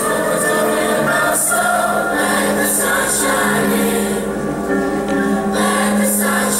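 Middle-school mixed chorus of boys and girls singing together, holding long sustained notes.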